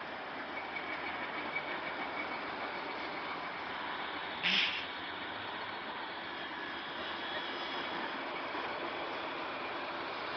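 Steady noise of construction-site vehicles and machinery engines running, with one short sharp noise about four and a half seconds in.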